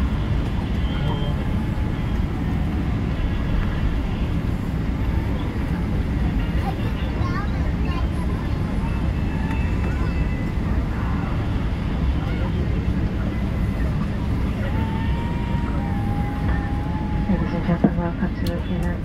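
Cabin noise of a Boeing 777-300ER taxiing after landing: a steady low rumble from the engines at idle and the wheels rolling, with faint passenger voices in the background.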